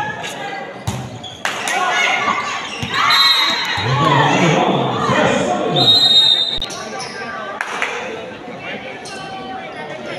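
A volleyball is struck a couple of times in a rally in an echoing gym. Players and spectators then shout loudly as the point ends, with two short blasts of the referee's whistle about three and six seconds in.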